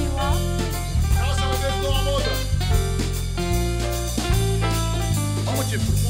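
Upbeat band music with electric guitar, bass and drums, playing steadily with a changing bass line.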